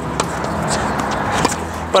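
A tennis ball struck by the Wilson Pro Staff X racket just after the start, with a couple of fainter knocks later that fit a ball bounce or a return hit, all over a steady rushing background noise. The player finds this racket's contact a little on the muted side.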